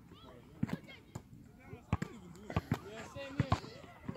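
Basketballs bouncing on an asphalt court: about eight sharp, irregularly spaced thuds, some in close pairs, with faint voices in the background.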